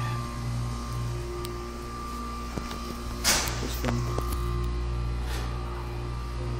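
Steady electrical machine hum made of several fixed tones, with a brief hiss-like rustle about three seconds in.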